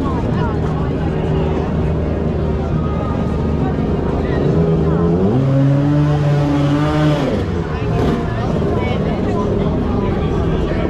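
Motor scooter engines running among voices, one engine note rising a little before midway, holding for about two seconds, then falling away as it passes.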